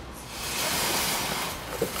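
Oxy-acetylene cutting torch hissing steadily. The hiss swells in about half a second in and fades near the end.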